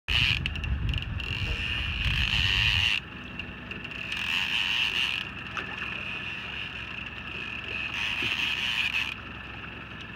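Open-water sound aboard a small fishing boat: wind rumbles on the microphone for about the first three seconds, then drops away, leaving a steady high hiss.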